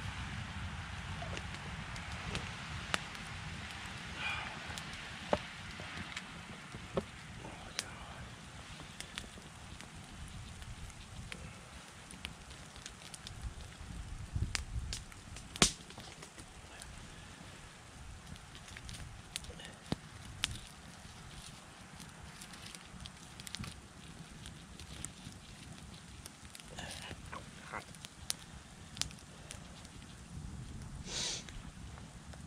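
Wood campfire crackling, with sharp irregular pops throughout, the loudest about halfway through, over a low steady rumble.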